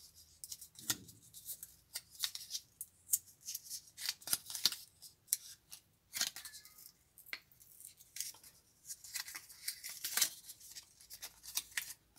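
Fingers handling a small adhesive pad and picking at its paper backing to peel it off: scattered faint crackles and small clicks.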